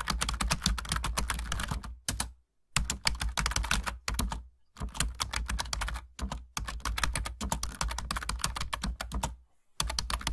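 Ballpoint pen writing on paper: a rapid run of small taps and scratches as each character is written, broken by a few short pauses between terms.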